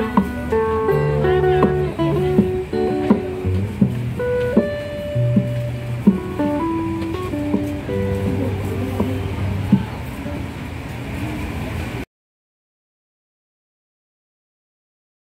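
Harmonica playing held melody notes over a strummed and plucked acoustic guitar, an instrumental passage with no singing. The sound cuts off abruptly near the end.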